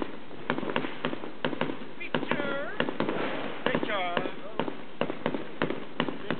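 New Year's Eve fireworks and firecrackers banging irregularly, many sharp reports a second. Voices call out briefly about two seconds and about four seconds in.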